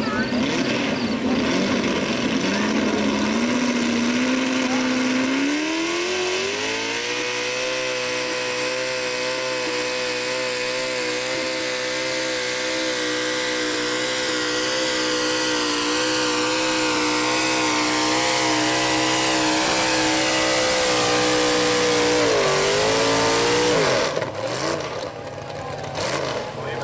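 Pulling truck's engine at full throttle during a truck pull. The revs climb in steps over the first several seconds, then hold high and steady for about fifteen seconds. There is a brief dip near the end before the throttle is let off.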